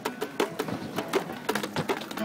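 Acoustic guitar strummed in a steady, quick rhythm.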